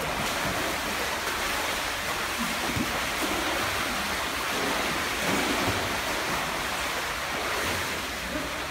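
Water splashing steadily as a small child kicks and paddles through a swimming pool.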